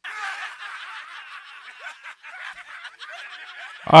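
A group of men laughing and jeering, sounding thin with the low end cut away.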